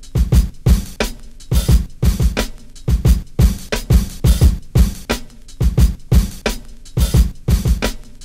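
Lo-fi boom bap drum loop playing: a steady pattern of heavy kicks and snares, programmed on an Akai MPC 1000 drum machine.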